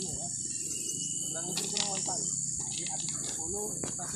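A steady, high-pitched chorus of insects, with faint voices and a few soft knocks underneath.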